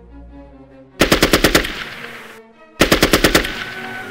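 Two short bursts of automatic gunfire, each a rapid string of about seven or eight shots lasting around half a second, the second burst coming roughly two seconds after the first, over background music.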